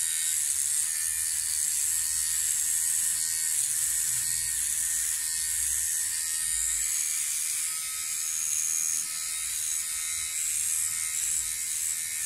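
MicroTouch Solo rechargeable beard trimmer running against a beard, a steady high-pitched buzz. The trimmer is failing to cut the beard hair.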